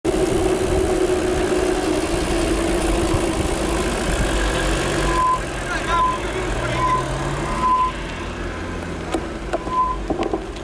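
Wind and road noise on a moving bicycle's camera microphone, with tyres running on wet tarmac. About halfway through the noise drops, and a short, high squeak repeats roughly every second, about five times.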